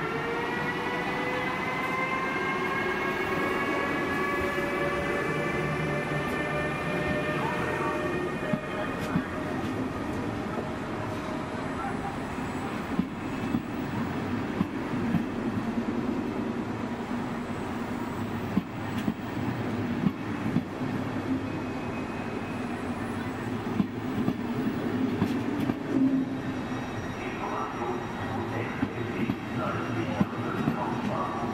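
Siemens Vectron electric locomotive hauling a passenger train slowly past a station platform. Its traction drive gives a rising whine of several tones over the first eight seconds or so. Then the passenger coaches roll by with a low rumble and scattered wheel clicks.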